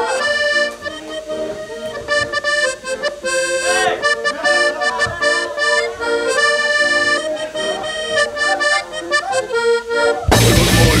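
Piano accordion playing a melody on its own, in held notes and chords that change every half second or so.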